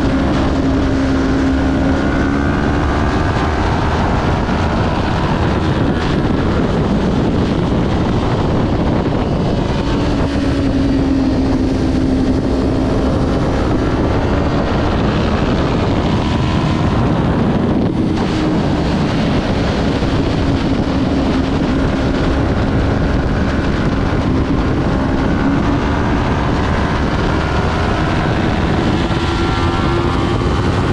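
Kawasaki Ninja 400's parallel-twin engine running hard at racing revs, its pitch rising and falling with throttle and gear changes through the corners, under heavy wind noise on the onboard microphone.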